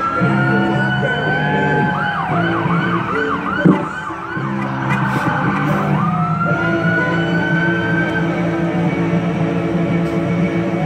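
Electronic emergency-vehicle siren cycling through its modes: a rising wail, then a fast yelp of about four sweeps a second, a quicker warble, and a wail again in the second half. Music plays underneath, and a single sharp knock sounds a little over a third of the way in.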